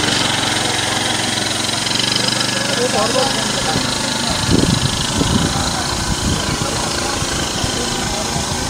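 An engine running steadily at idle under faint, indistinct voices. An irregular low rumble joins in from about halfway.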